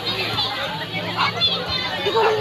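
Children shouting and calling out as they play in shallow sea water, many voices overlapping at a distance, over a steady low hum.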